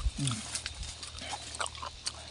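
A dull thump, then a short low grunt that falls in pitch, followed by scattered light crackling of dry ginger leaves and stalks being handled.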